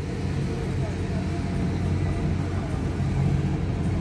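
Steady low rumble of road traffic and an idling engine, heard from inside a stopped car, with faint voices from the street.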